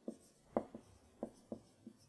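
Marker writing on a whiteboard: about six short, separate strokes as letters are drawn.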